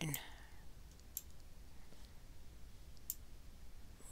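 Two faint computer mouse clicks, about a second in and again near three seconds, over a low steady hum.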